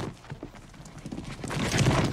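Horses' hooves on the ground in a film soundtrack: many quick hoof strikes that grow louder about one and a half seconds in.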